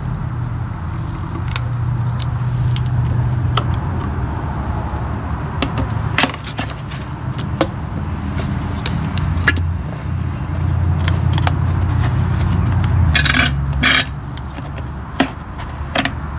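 Handling noise from a plastic jug and its tubing as drained gear oil is emptied into a container: scattered light clicks, with two short louder bursts near the end, over a steady low hum.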